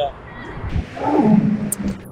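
A man's drawn-out, low vocal sound, a wordless groan or laugh, starting about a second in and held to the end. A brief sharp click comes shortly before it ends.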